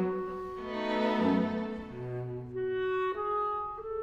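Clarinet and string quartet playing, the clarinet carrying long held notes over the bowed strings, with a change of note about three seconds in.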